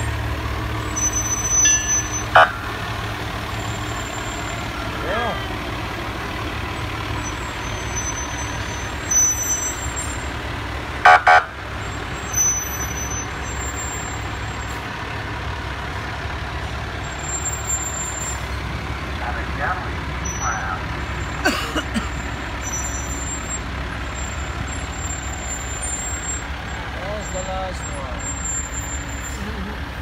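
Fire trucks' engines running in a steady low rumble as the trucks drive slowly past, with a brief loud blast about eleven seconds in and a few shorter sharp sounds.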